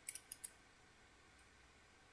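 About four quick, light clicks in the first half second, then near silence.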